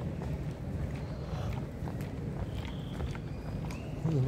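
Outdoor street ambience picked up while walking: a steady low rumble with scattered faint clicks and a few brief thin high tones.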